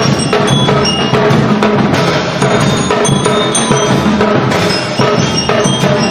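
Percussion band with lyres playing: bell lyres struck with mallets carry a bright melody over a steady beat of snare drums and bass drums.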